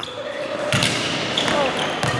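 Badminton racket striking hand-fed shuttlecocks at the net: two sharp taps, under a second apart.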